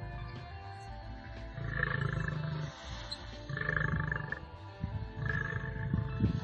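Male lion roaring: three long roars of about a second each, over steady background music.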